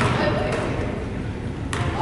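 A basketball bounced on a hardwood gym floor: a sharp thud at the start and another near the end, with voices in the gym behind.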